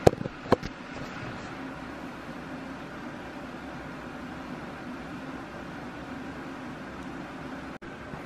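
Steady low room hum with two sharp clicks in the first half second.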